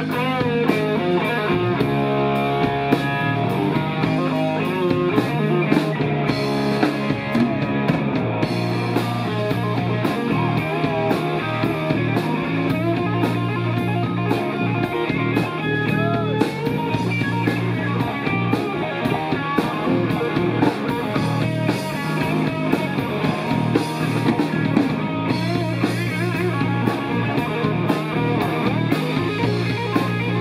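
Live rock band playing an instrumental passage: a semi-hollow-body electric guitar over electric bass and a drum kit.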